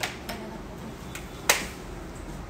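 A few sharp clicks from makeup containers and tools being handled, the loudest about one and a half seconds in.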